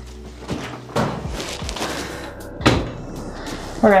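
A trigger spray bottle spritzing a few times, then the glass lid of a top-loading washing machine shut with a thud about two-thirds of the way in.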